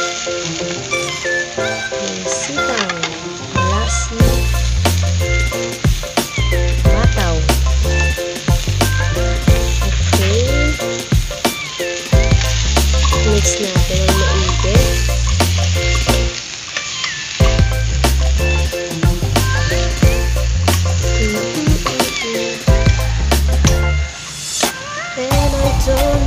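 Yardlong beans and corned beef sizzling in a stainless steel wok while a metal spoon stirs them, with frequent clinks of the spoon against the pan. Background music with a bass beat plays underneath.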